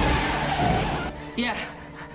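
A full-size Ford Bronco's tyres screeching as its engine accelerates it away. The sound is loud for the first second, then fades.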